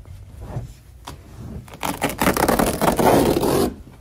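Carpet being ripped up off the floor: a few light rustles, then a long, loud tearing rip through the second half that stops abruptly.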